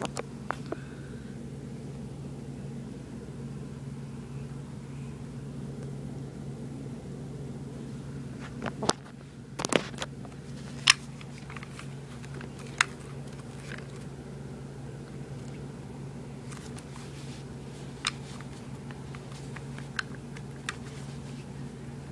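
A steady low hum with a handful of scattered sharp clicks and light knocks as a Denix Luger P08 replica pistol is handled close to the microphone, the clearest clicks coming in the middle.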